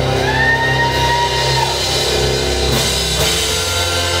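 Live rock band playing, with drum kit and guitar, loud and steady; long held notes slide up near the start and again near the end.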